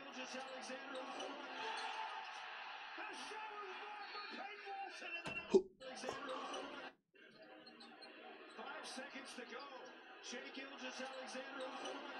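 Basketball game broadcast audio playing quietly: arena crowd noise and a commentator's voice, with ball bounces and one sharp knock a little over five seconds in. The sound cuts out briefly about seven seconds in.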